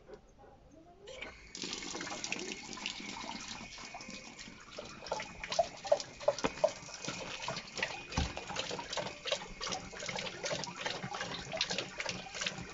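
Outdoor garden tap turned on about a second in, water running steadily and splashing, with irregular wet slaps and splashes as a dog laps and bites at the stream.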